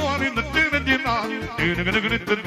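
Live band music: a male singer and a saxophone carry a wavering melody with heavy vibrato over a pulsing keyboard bass beat.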